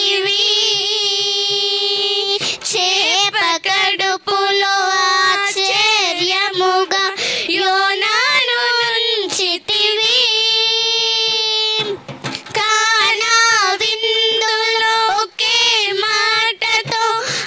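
Two young girls singing a worship song together, holding long notes with a wide vibrato and breaking briefly between phrases about twelve seconds in.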